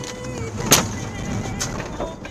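A sharp bang about three-quarters of a second in, then a lighter knock near the end, heard from inside a car over steady road rumble as it swerves onto the verge to avoid an oncoming car.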